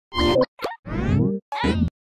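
Short cartoon-style sound-effect sting for an animated TV logo: four quick pops and springy pitch glides in a row, ending with a rising, wobbling swoop.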